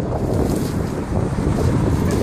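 Wind buffeting the microphone: a steady, low noise without distinct events.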